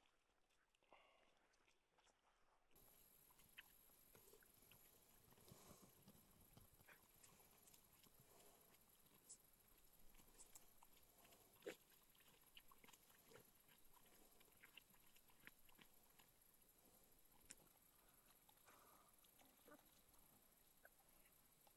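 Near silence, with faint scattered ticks and soft wet sounds, one slightly louder a little past halfway: a Finnish Spitz digging with her paws and snout in the shallow, muddy edge of a pond.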